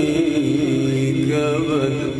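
A man reciting the Quran in a melodic, chanted style, holding long notes that waver and turn in pitch.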